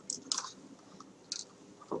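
A few faint mouth clicks and smacks, with a short breath about a second and a half in, picked up close to the microphone.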